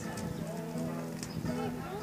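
Several voices over acoustic guitar, with a few sharp knocks or taps.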